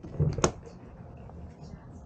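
An RV's outside-kitchen hatch door being swung up open, with one sharp click about half a second in, then a low steady background.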